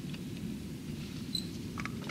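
Steady low room hum with a few faint small clicks and one short high-pitched electronic beep about one and a half seconds in.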